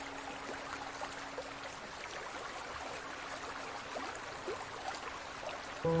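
Steady trickling, splashing water. A held musical note fades out over the first couple of seconds, and music chords come back in just before the end.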